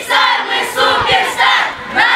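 A group of children chanting loudly in unison, calling out their words together in a steady marching rhythm of about two shouts a second.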